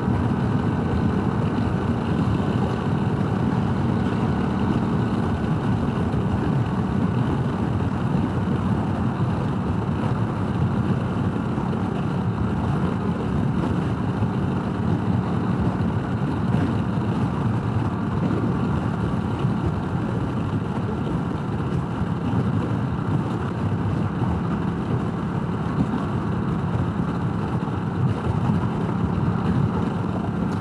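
Honda Rebel 1100's parallel-twin engine running steadily at highway speed, mixed with wind rush and road noise as heard from the rider's seat.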